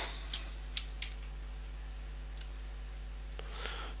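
A few computer keyboard key clicks, most of them in the first second, as a closing parenthesis is typed, over a steady low electrical hum.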